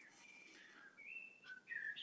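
Near silence: room tone with a few faint, short high chirps.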